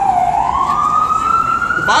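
Emergency vehicle siren wailing: its tone slides down to its lowest pitch just after the start, then rises steadily through the rest.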